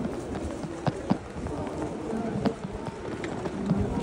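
Footsteps on stone paving and the chatter of a passing crowd of pedestrians, with a few sharp scuffs and knocks at irregular intervals.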